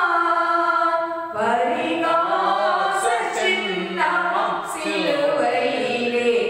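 A woman singing a hymn unaccompanied into a microphone, holding long notes that glide up and down in pitch, with brief breaths between phrases.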